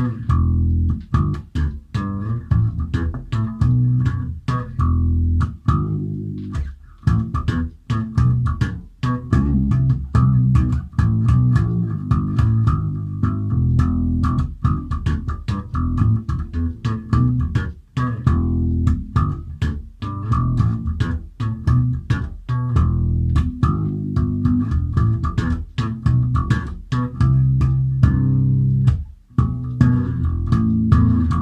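Electric bass guitar played slap style through an amplifier: a busy line of thumbed notes and popped octaves, with a sharp click on each attack.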